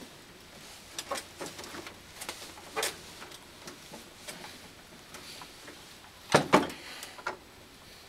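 Irregular clicks and knocks from an etching press being handled at its top bar and felt-covered bed, with two louder knocks close together about six and a half seconds in.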